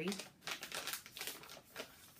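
A bag of loose-leaf tea being handled, its packaging crinkling in a quick run of small crackles.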